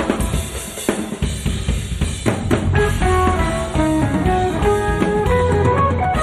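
A live jazz-fusion band playing, led by a busy drum kit of bass drum, snare and cymbal hits. A low bass line runs under it, and from about two seconds in a quick line of melody notes joins.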